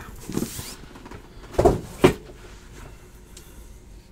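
Shrink-wrapped cardboard trading-card boxes being handled on a table: a brief plastic-like rustle, then two knocks about half a second apart.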